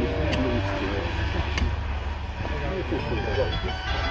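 Men's voices talking in the background over a steady low rumble, with a couple of faint clicks.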